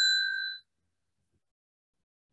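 A single bright bell ding, struck just before and ringing out, cutting off about half a second in.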